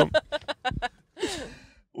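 A quick run of short laughter pulses, then a breathy sigh that falls in pitch.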